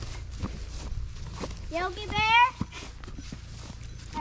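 Footsteps and a walking stick swishing and snapping through ferns, with a child's high-pitched wordless call rising in pitch about two seconds in.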